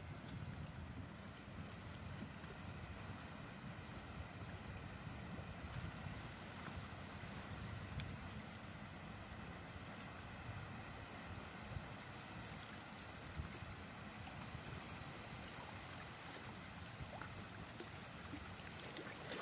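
Gentle sea water lapping and sloshing against shoreline rocks, a steady low wash with wind rumbling on the microphone and a few faint ticks.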